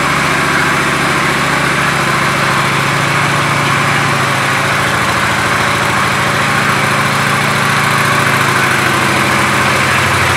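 Honda Shadow 750 Phantom's V-twin engine idling steadily, with an even train of firing pulses and no revving.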